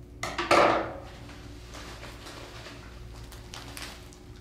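A pair of scissors set down on a tabletop: a short clatter about half a second in, the loudest sound here, followed by faint rustling of a plastic sand bag being handled.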